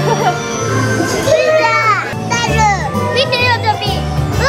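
Children's excited high-pitched exclamations over upbeat ride music with a steady changing bassline.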